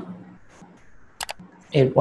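A quick double click, like a computer mouse button pressed and released, about a second in, from the click sound effect of an on-screen subscribe-button animation.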